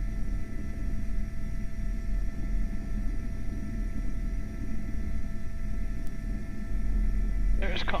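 Airbus H125 helicopter in a hover heard from inside the cockpit: a steady low rotor and turbine drone with a few constant high whine tones over it.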